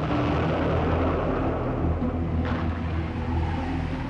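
Battle sound-effect bed over archival war footage: a steady low rumble with an aircraft-engine drone, blended with a sustained low music score. A short swell of noise comes about two and a half seconds in.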